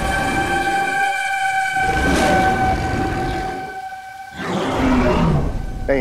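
Sound-effect gorilla roars in rough surges over a steady, horn-like tone that cuts off about four seconds in; another roar with a wavering pitch follows.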